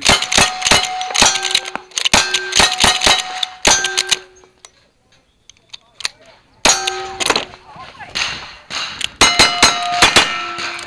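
Rapid shots from a lever-action rifle, each followed by the ring of struck steel plate targets, for about four seconds. After a short lull, a few more shots with ringing steel come around the middle. A fast string of revolver shots on steel plates, each ringing, comes near the end.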